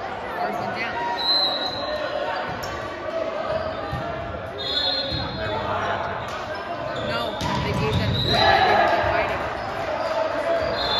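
Echoing gym hall with players' and spectators' voices throughout. Sneakers squeak on the hardwood floor a few times, and a ball bounces on the court, loudest near the end.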